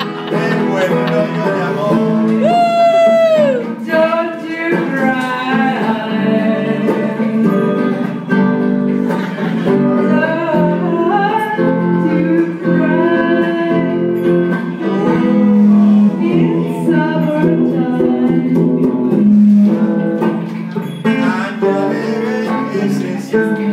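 A woman singing an improvised song into a microphone over acoustic guitar accompaniment, her voice sliding down in a long swoop about three seconds in.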